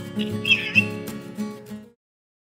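Background lo-fi music with a soft plucked-guitar sound over a steady bass, fading out near the end.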